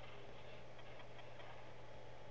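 Quiet steady low hum with a few faint computer-mouse clicks.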